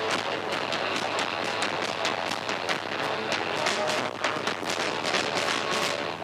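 Rock band rehearsing, an electric guitar and a bass guitar playing loudly with sharp percussive hits coming thick and fast throughout.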